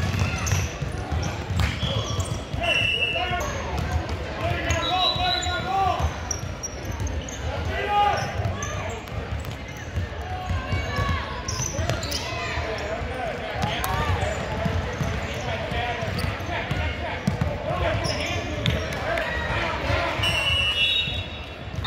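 A basketball dribbled on a hardwood gym floor during play, with indistinct voices of players and spectators echoing in the large hall.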